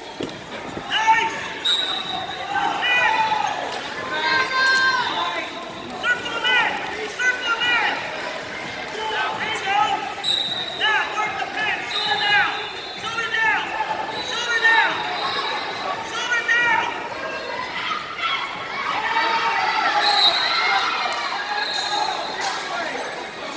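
Wrestling shoes squeaking on the mat during a wrestling bout: many short squeaks, on and off throughout. Shouting voices and the din of a large hall lie under them.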